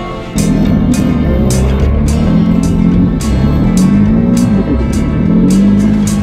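Background rock music with a steady drum beat and bending guitar lines, getting louder about half a second in.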